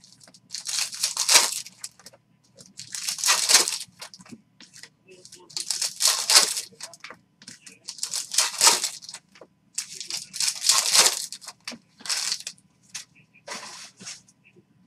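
Foil wrappers of Bowman Chrome baseball card packs being torn open and crinkled by hand, one pack after another, with a burst of tearing about every two seconds.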